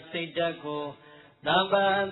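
A Buddhist monk's voice reciting in a drawn-out, chant-like intonation on long held notes. It breaks off briefly about a second in, then resumes.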